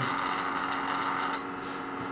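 Steady electrical hum from a pulsed coil test rig. About a second and a half in there is a single faint click, and the higher part of the hum drops away after it, as fits the switch being pressed to route the coil's back EMF through a diode back into the coil.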